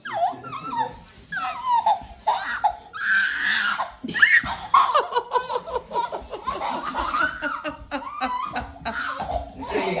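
People laughing in repeated bursts, with high rising and falling vocal sounds between them.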